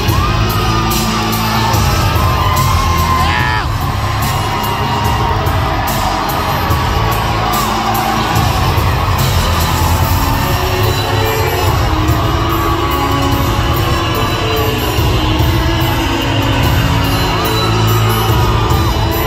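Music with a heavy beat played over an arena's speakers as a winner's theme, with a crowd cheering and whooping over it.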